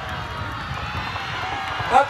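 Outdoor crowd of race spectators: a steady murmur of many distant voices, with faint calls rising out of it now and then.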